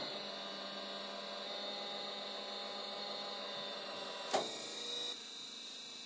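Electrohydraulic unit of a paving machine running with a steady hum while it lowers the machine from its transport wheels onto its drive tracks. A short clunk comes about four seconds in, and the hum drops away about a second later.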